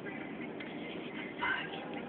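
Steady road and engine noise from inside a moving car's cabin, with a short louder sound about one and a half seconds in.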